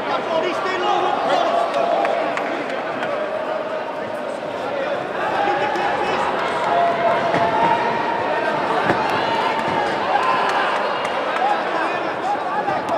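Many voices shouting and talking at once, a continuous babble of spectators and corner teams echoing around a large sports hall, with a few calls held as longer shouts.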